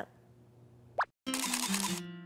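A short rising 'bloop' sound effect about a second in, followed by a break and then light music starting: a programme transition sting leading into the next segment.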